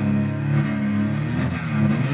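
A solo cello, Paul D'Eath's Galway Cello, played with the bow in low, sustained notes that sound dense and rough.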